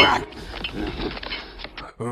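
A man grunting and straining with effort as he clings to a pole. It opens with a loud burst and then runs on more quietly and unevenly.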